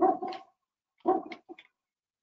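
A dog barking: a few short barks, the first near the start and two more about a second in.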